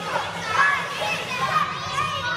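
Many young girls' voices calling out and talking over one another at once.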